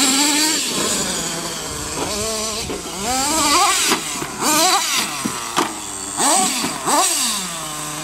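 Small nitro engine of a radio-controlled monster truck revving up and down in short bursts, its pitch rising and falling again and again as the throttle is worked. Near the end it drops back to a steady idle.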